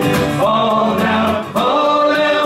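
Irish folk song performed live: an acoustic guitar is strummed in a steady rhythm while a man sings. The sung phrase starts about half a second in and breaks briefly about a second and a half in.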